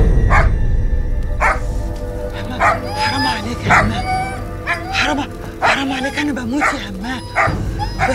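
Dog barking repeatedly, short sharp barks about every half second to second, over a sustained music score.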